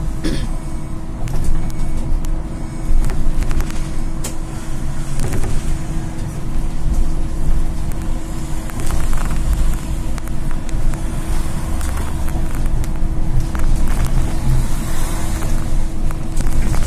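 Cab interior of a moving Solaris Trollino II 15 AC trolleybus: a heavy low rumble from the road and body, a steady hum held throughout, and scattered clicks and rattles from the cab fittings.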